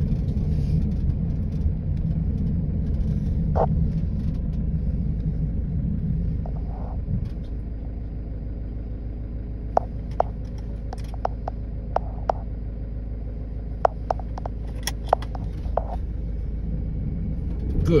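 Low, steady rumble of a car creeping along a dirt track at walking pace, easing a little about seven seconds in. Several short sharp clicks are scattered through the second half.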